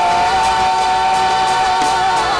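Women's worship group singing, holding one long note in two-part harmony.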